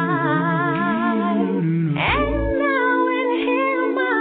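A cappella gospel singing: several voices in harmony hold long notes with vibrato and move to a new chord about halfway through.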